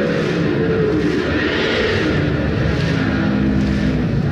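Heavily distorted electric guitar playing loud held notes that slide in pitch, in a live rock concert audience recording with a hiss and crowd haze behind it.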